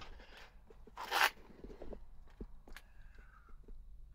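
Handling of a Toyota FJ Cruiser's rear-hinged access door: a short scrape about a second in, then a few light clicks.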